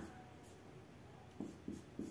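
Felt-tip marker writing on paper: a few faint, short scratchy strokes in the second half.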